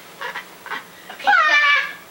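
A person's high-pitched, drawn-out wordless vocal sound, like a squeal or bleat, lasting about half a second and starting just past a second in. It follows a few short breathy noises.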